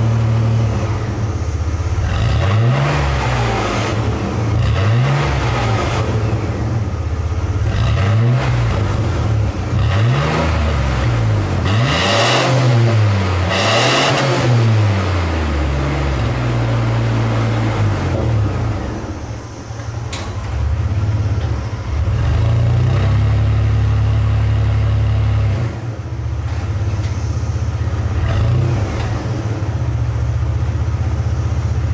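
2003 Chevy S10 pickup engine through a Gibson aftermarket exhaust, blipped up and down in several quick revs in the first half, then settling to a steady idle with one more short rev near the end.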